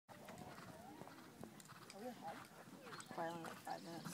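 Quiet talking from people nearby, with the hoofbeats of a horse cantering on a sand arena.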